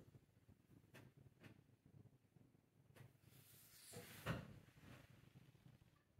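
Near silence, broken by a few faint clicks and one soft knock about four seconds in.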